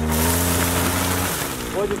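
A small engine running and revving slightly, with a loud hiss over it, cutting off about one and a half seconds in.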